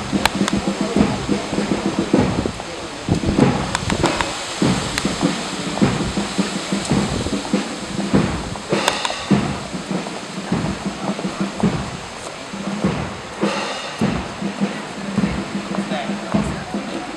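A town wind band playing march music with drums, mixed with the chatter of people walking in a procession.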